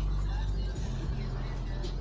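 Low, steady rumble of road traffic, a vehicle going by and slowly fading.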